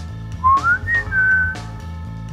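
A single whistled note sliding up in pitch for about half a second, then holding a slightly lower note for another half second, over background music with a steady low beat.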